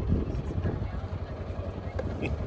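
Wind buffeting the microphone as a steady, uneven low rumble, with faint voices underneath.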